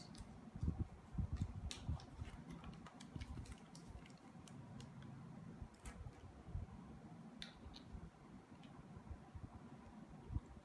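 Small plastic toy pieces being handled and fitted together by hand, making scattered faint clicks and taps over a low background hum.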